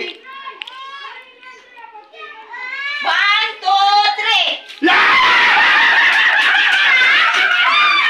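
Excited voices calling out in a sing-song way, then about five seconds in a sudden outburst of loud shrieking and screaming from several people at once, which keeps going.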